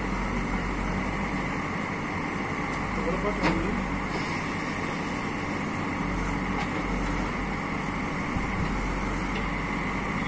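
A JCB 3DX backhoe loader's Kirloskar diesel engine running steadily while the backhoe digs a foundation pit.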